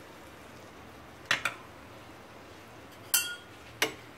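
Metal kitchen utensils clinking: a spoon against a small bowl of garlic butter and a metal spatula at a frying pan. There are sharp clinks about a second in, just after three seconds (ringing briefly) and near the end, over a faint steady sizzle of bread frying in butter.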